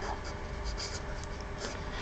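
Felt-tip marker writing on paper, a series of short, faint strokes as letters are drawn.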